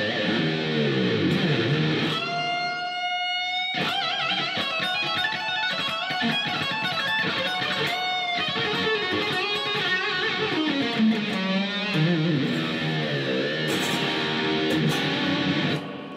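Electric guitar, an EVH 'Circles', playing an improvised lead solo: quick runs of notes, with a long note held and shaken with vibrato about two seconds in and another about eight seconds in.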